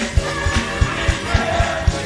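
Gospel choir singing over band music with a quick, steady beat.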